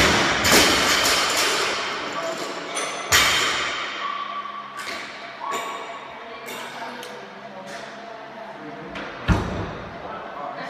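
Loaded barbells dropped from overhead onto a rubber gym floor: a heavy slam right at the start, with noise carrying on for a second or two, another slam about three seconds in, and a single thud near the end.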